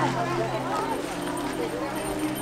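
A crowd of people talking at once, many voices overlapping in a murmur, over a steady low hum.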